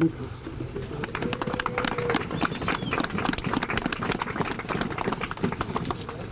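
A crowd applauding: many separate hand claps in a steady patter, with a few voices under it.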